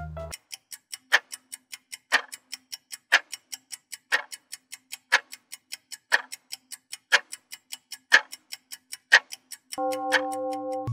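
Ticking-clock sound effect of a countdown timer: quick, even ticks about four a second, with a louder tick on each second. A steady tone of several notes starts near the end as the count reaches zero.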